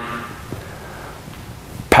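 Steady background hiss of room tone with a faint click about half a second in.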